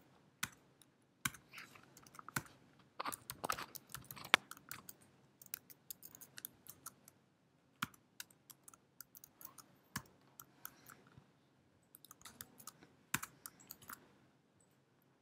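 Computer keyboard typing in irregular runs of sharp keystroke clicks with short pauses between them.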